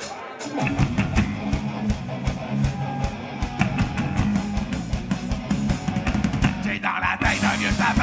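A heavy metal band playing live, with distorted electric guitars, bass guitar and drum kit. They come in together about half a second in on the instrumental opening of a song, and a man's vocal joins near the end.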